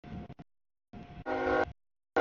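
Short clipped snatches of freight-train rumble. Then, about a second and a quarter in, a diesel locomotive's multi-note horn sounds loudly for under half a second and is cut off abruptly.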